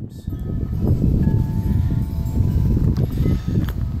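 Wind buffeting the microphone outdoors, giving an uneven low rumble, with a faint steady ringing tone in the middle.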